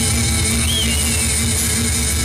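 Live acoustic band music: acoustic guitars strummed over a steady, even beat.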